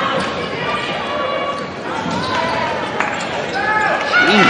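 Live basketball court sound: sneakers squeaking on the hardwood floor and the ball being dribbled, with a sharp knock about three seconds in.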